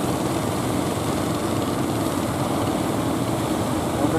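Fishing boat's engine running in a steady drone as the boat comes in through the surf.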